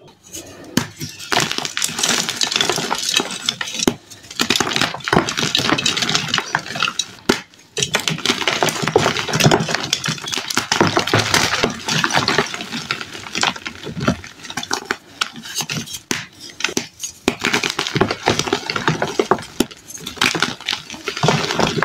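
Pressed blocks of gym chalk being squeezed and crumbled by hand into powder: a dense, crunchy crackle of many small snaps. It comes in runs of a few seconds with brief pauses between squeezes.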